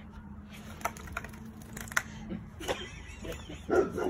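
A few scattered light taps, a wet golden retriever puppy's claws on concrete, with a voice starting near the end.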